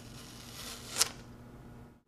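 Adhesive test tape peeled off a cross-cut coated metal test piece in one quick, steady pull: a ripping hiss that builds for about a second and ends in a sharp snap as the tape comes free. This is the tape-pull stage of a cross-cut paint adhesion test. A low steady hum runs underneath.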